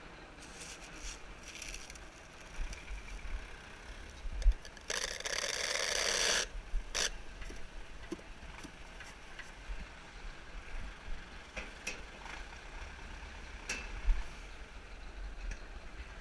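Low, steady rumble of a working tractor with scattered rattles and knocks from the bale wrapper's frame, and a burst of hiss about five seconds in that lasts about a second and a half.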